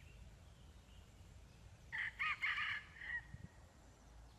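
Red junglefowl rooster crowing once: a short, clipped crow of a few linked notes, about two seconds in, ending with a brief trailing note.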